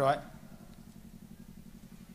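A man's word ends just at the start. A pause follows, filled by a faint, low, steady hum with a fast, even pulse in it.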